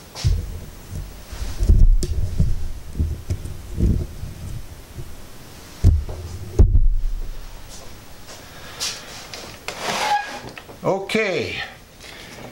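Handling noise on the camera's microphone: low, irregular rumbling and bumps while the camera is moved, with a sharper knock about two seconds in and another past six seconds. A man's voice speaks briefly near the end.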